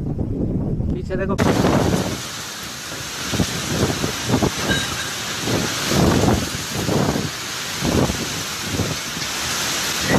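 Wind rumbling on the microphone for about the first second, then after a cut a heavy rainstorm: a dense, steady hiss of driving rain with irregular gusts of wind surging louder every second or so.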